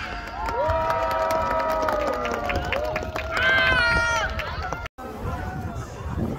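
A small audience cheering with long, drawn-out whoops from several voices right after dance music stops, one higher voice louder than the rest about three and a half seconds in. The sound cuts out for a moment about five seconds in.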